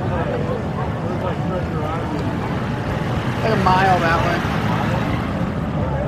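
Steady low rumble of street traffic under the chatter of people close by, with one louder voice briefly about halfway through.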